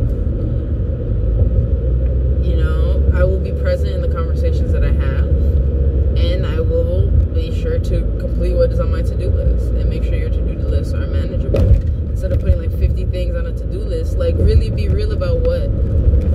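Steady low road and engine rumble inside a moving car's cabin, with a woman's voice talking over it.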